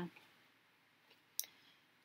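A single sharp click about one and a half seconds in, with a fainter tick just before it, against a quiet background.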